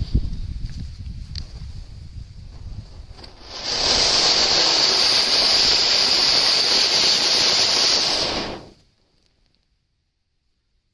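A large anar (flower-pot fountain firework) sputters quietly over a low rumble. About three and a half seconds in it erupts into a loud, steady rushing hiss of spraying sparks. The hiss lasts about five seconds and then cuts off quickly as the fountain burns out.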